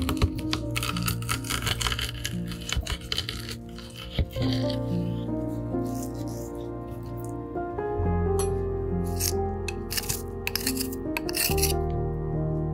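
Garlic cloves crushed through a metal garlic crusher on a wooden board: short crunching and scraping sounds in two spells, in the first half and again near the end. Background music plays throughout.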